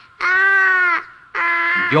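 A high-pitched voice holding two long, steady vowel sounds, each just under a second, with a short gap between them; a man's voice starts a word right at the end.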